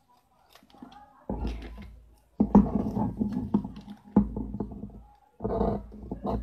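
Paper sewing-pattern pieces handled and cut with scissors on a wooden table: rustling with knocks and thuds, coming in several bursts from about a second in.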